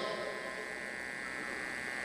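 Steady electrical hum and buzz from the sound system's open microphones, faint under a pause in the reading.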